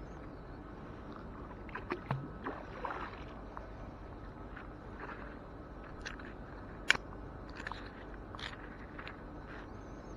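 Fishing magnet hauled in by its wet rope, then rubber-gloved hands picking small pieces of metal debris off its face: scattered light scrapes and clicks, with one sharp click about seven seconds in.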